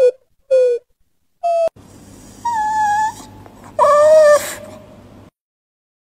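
A puppy whimpering: three short, high whines in quick succession, then two longer whines a second or so apart.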